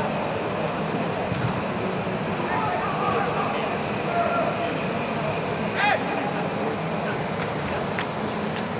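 Steady rushing noise of an air-supported sports dome's blowers and air handling, with faint distant shouts from players on the pitch and one louder call about six seconds in.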